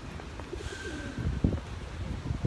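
A pigeon cooing faintly in the background, over low thuds and handling noise from a phone carried while walking.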